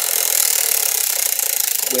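Hand-held prize wheel spinning fast, its flapper clicking against the pegs so quickly that the clicks run together into a loud, steady rattle.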